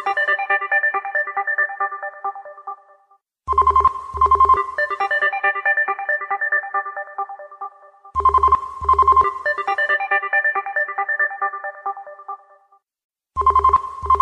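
A melodic phone ringtone playing on a loop. Each round opens with two short accented notes, goes on into a run of bright chiming notes that fades away, and starts again about every five seconds.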